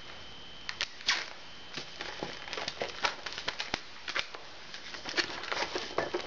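Inflated latex modelling balloons being handled and squeezed by fingers: scattered short squeaks and crackly rubbing clicks of the rubber, growing busier in the second half.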